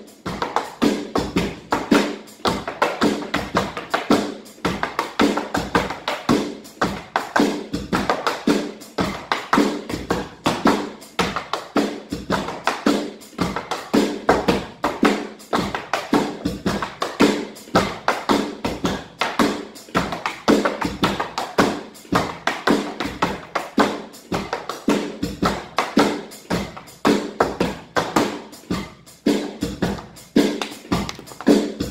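Metal-plated tap shoes striking a raised plywood tap board in quick, continuous rhythmic patterns of taps and heel drops, over music.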